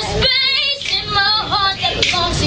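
A young female voice singing a pop melody with wavering, sustained notes; the low bass of the backing music drops away for most of these two seconds.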